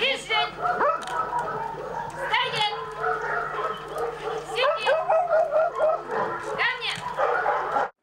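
A dog barking and yelping in short, high calls, about four of them roughly two seconds apart, with people's voices beneath.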